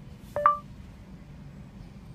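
A smartphone's voice-dictation start tone: one short two-note beep, a lower note then a higher one, about half a second in, signalling that the phone has begun listening. Under it runs a steady low car-cabin hum.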